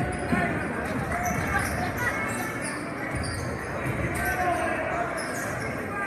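A basketball being dribbled on a hardwood gym floor, heard over the steady chatter of a crowd in the gym.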